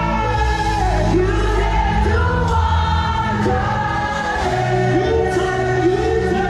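Live gospel music: a woman singing lead into a microphone over a band, with bass and drums keeping a steady beat.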